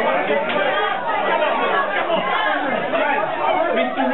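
Crowd chatter: many people talking at once, a steady hubbub of overlapping voices.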